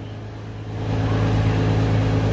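A machine running with a steady low hum, getting louder about a second in.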